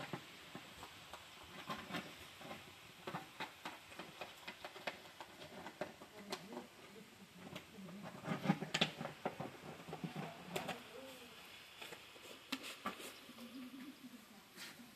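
Clear plastic jar and its screw lid being handled on a concrete slab: scattered light clicks and knocks, with low voice-like calls now and then, strongest a little past the middle.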